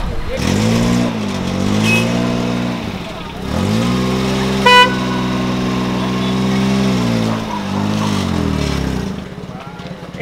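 A small car engine is revved twice: a short rev in the first three seconds, then a longer one that climbs, holds steady for several seconds and falls away. Midway through the second rev, a single short car-horn toot is the loudest sound.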